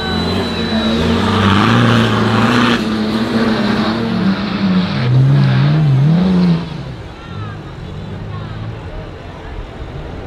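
Engine of a modified off-road competition 4x4 revving hard under load on a dirt climb, its pitch rising and falling with the throttle. About six and a half seconds in it falls back to a lower, quieter running.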